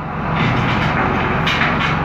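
Diesel engine of a John Deere front-loader tractor running steadily with an even low throb.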